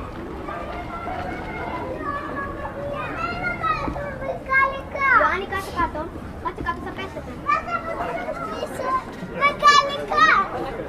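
Crowd of people talking at once, with children's high voices calling out over the chatter several times in the second half.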